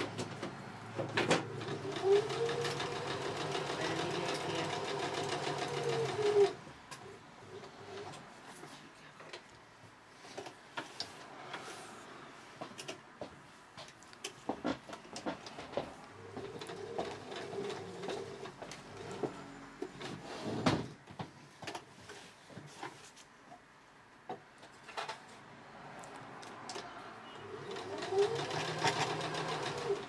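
Electric sewing machine stitching a zip into fabric in bursts, each run speeding up at the start and slowing at the stop. There is a long run in the first few seconds, a fainter one midway and another near the end, with scattered clicks and cloth rustling between runs.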